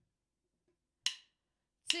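Near silence, then a single sharp click about a second in, the first beat of a count-in before drumming. The next count begins right at the end.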